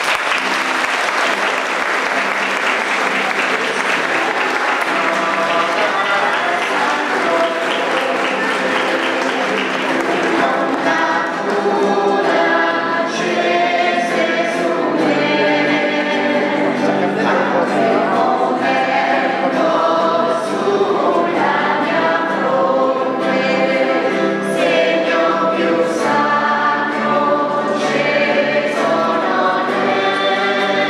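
Applause from a church congregation over choir singing. The clapping fades after about ten seconds, leaving the choir singing on its own.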